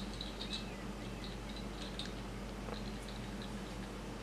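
Faint, scattered little clicks of a small plastic toy figure being handled, its arms moved, over a steady low hum.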